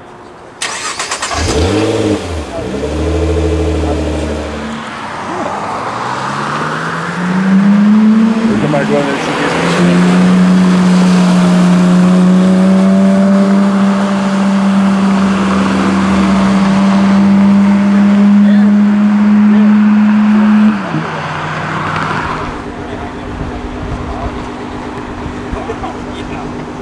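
A car engine revving in short blips, then climbing in pitch and holding a loud, steady note for about ten seconds before it drops away.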